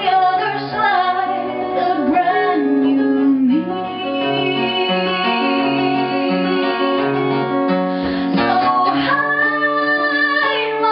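Live acoustic guitar with a woman singing long held notes, her voice wavering in pitch at the start and again near the end.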